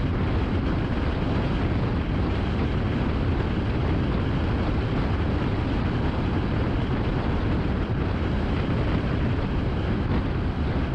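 Steady road noise of a car driving at freeway speed: tyre and wind noise, heaviest in a low rumble, with no changes or distinct events.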